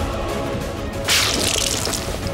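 Water splashed from a glass into a face: one sudden splash about a second in, lasting under a second, over background music.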